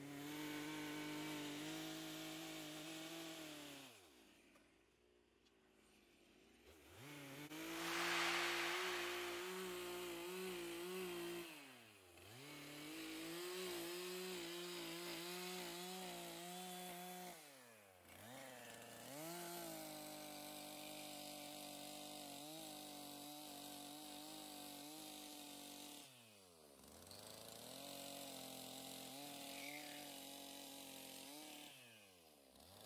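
Stihl chainsaw making long, shallow full-length cuts along a log's belly groove to remove the bulk of the wood. The engine revs up for each pass and falls back toward idle between passes about four times, with the longest lull a few seconds in.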